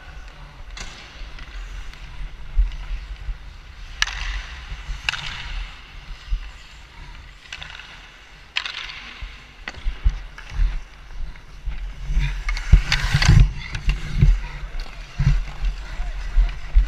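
Ice hockey skate blades scraping and carving on rink ice, in a series of strides that each start sharply and fade over about a second, over a steady low rumble of movement on a body-worn camera. Near the end come louder, denser scrapes with a few knocks.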